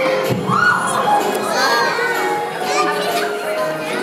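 A crowd of young children calling out and chattering, many high voices at once, over music. There is a dull thump just after the start.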